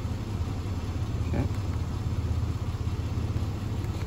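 1996 GMC Jimmy's 4.3 L V6 engine idling steadily as a low hum. It runs cleanly, with no misfires counted on any cylinder.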